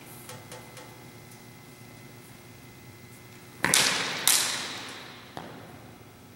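Two sword blades clashing twice in quick succession, about two-thirds of a second apart. Each strike rings out and fades over about a second, followed by a lighter tap of blade on blade.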